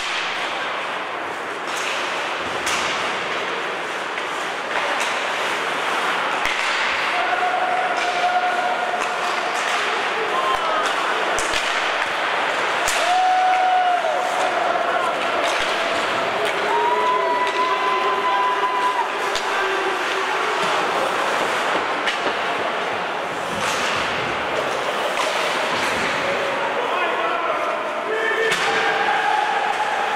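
Ice hockey play in a large, echoing rink: sharp clacks and thuds of sticks, puck and bodies against the boards, scattered through a steady din of spectators' voices and shouts.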